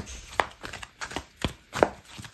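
Tarot deck being shuffled by hand: a run of irregular sharp slaps and clicks as the cards strike each other, a few a second, the loudest near the end.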